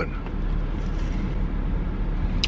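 Steady low rumble and fan hiss inside a vehicle cabin: an idling engine and the air conditioner blower running.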